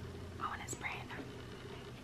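Faint whispered, breathy murmuring from a woman, with no voiced words, over a steady low room hum.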